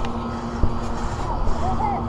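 Bouncing on a trampoline mat: a steady low rumble with a dull thump about two-thirds of a second in, and a child's faint voice near the end.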